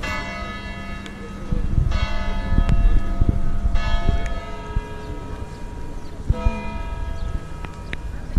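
Large bell tolling, one stroke about every two seconds, four strokes in all, each ringing on and fading under the next. A low rumble of wind or handling noise on the microphone runs beneath.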